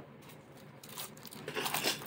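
Plastic packaging crinkling and rustling as it is handled. It starts faintly about a second in and grows louder toward the end.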